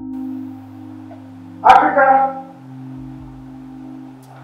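Film background music of sustained low synthesizer tones, broken about halfway by a short, loud burst of pitched sound.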